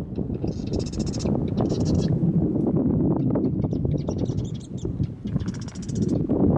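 Marsh birds in the reeds giving high calls in three short bursts, the last near the end. Underneath are crunching footsteps and low wind rumble on the microphone.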